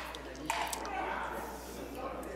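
Faint clicks of wooden crokinole discs being handled on the board, over the quiet background of a hall, with a soft rustle about half a second in.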